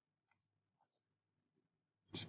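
Near silence, broken by three faint computer-mouse clicks: one about a third of a second in and two close together just before the one-second mark.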